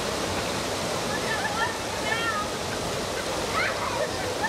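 Steady rush of river water pouring over a rock ledge, with brief faint voices over it.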